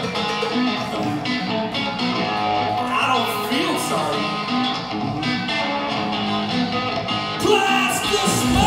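Live electric guitar played by a rock band through a bar's PA, with crowd chatter underneath and a louder hit near the end.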